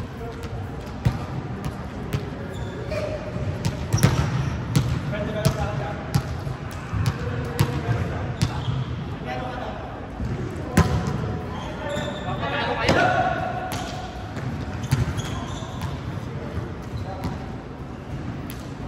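A volleyball being struck and bouncing on a hardwood gym floor: sharp slaps at irregular intervals, the loudest about four seconds in and again near eleven seconds. Players' voices call and chatter throughout in a large gym.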